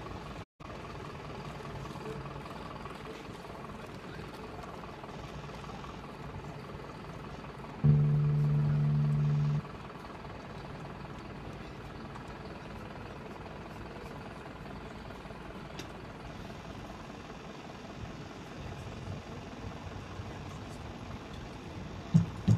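Steady city street background with traffic. About eight seconds in, a loud, steady, low buzzing tone sounds for nearly two seconds and stops abruptly.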